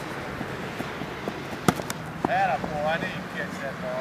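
Voices calling out with rising-and-falling pitch in the second half, over a steady low hum. Two sharp knocks come a little before halfway.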